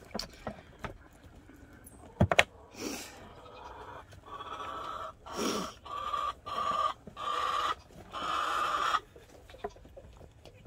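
A hen clucking in a run of repeated calls over several seconds, preceded by a couple of sharp knocks.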